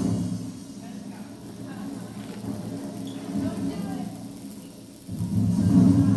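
A drum roll, answering a call for one: a low rumbling roll that starts loud, tapers off, then swells again about five seconds in.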